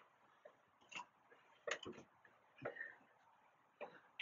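Faint knocks of footsteps on the rungs of a wooden folding loft ladder as a person climbs down it, four steps about a second apart.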